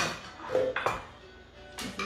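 A few sharp metal clinks and knocks from a stainless-steel Thermomix mixing bowl and a spatula being handled: about three strikes, roughly a second apart, the first the loudest. Music plays faintly underneath.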